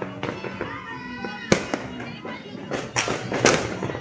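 Fireworks banging: one sharp crack about a second and a half in, then a quick cluster of bangs near the end, over background music and voices.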